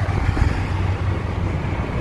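Steady low rumble of a moving car heard from inside its cabin: road and engine noise with some wind noise.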